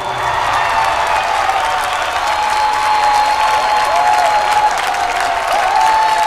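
Studio audience applauding as a dance performance's music ends, an even wash of clapping with a steady high tone held through most of it.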